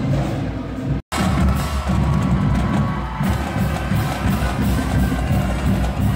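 High school pep band playing brass and marching drums. The sound cuts out for a moment about a second in, then comes back mostly as the drumline's beat.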